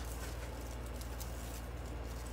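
Faint rustling of dry raffia being looped and handled in the fingers, over a steady low hum, with a small click at the start.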